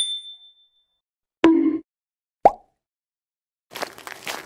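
Animation sound effects: a bright chime at the start that rings out within about half a second, a short pop about a second and a half in, a sharp click a second later, and a noisy whoosh starting near the end.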